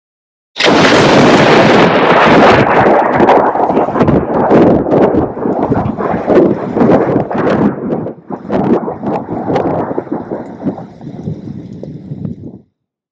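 A loud blast-like noise that starts suddenly about half a second in, then rumbles and crackles on with irregular pops, slowly thinning out.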